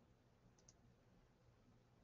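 Near silence with a low room hum, broken about half a second in by two faint, quick clicks of a computer mouse button in close succession.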